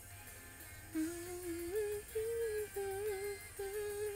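A woman humming a tune with closed lips, starting about a second in, in held notes that step up and down.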